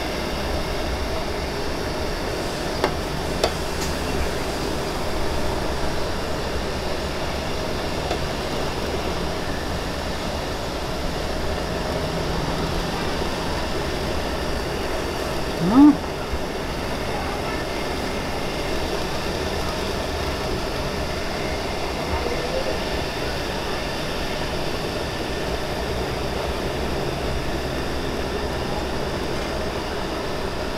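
Metal pot steamer at a full boil, its water and steam giving a steady rushing hiss and rumble under the pan. A short rising sound comes about halfway through.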